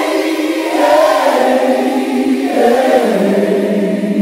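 A choir singing long held chords in harmony, the lowest part stepping down a little near the end.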